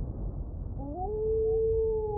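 A wolf howl sound effect: one long call that glides up in pitch about a second in and then holds steady, over a fading low rumble.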